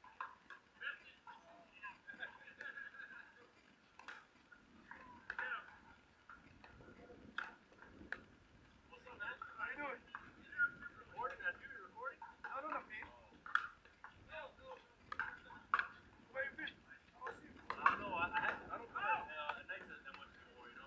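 Pickleball paddles striking a plastic ball: sharp pops at irregular intervals through a rally, with voices talking in the background.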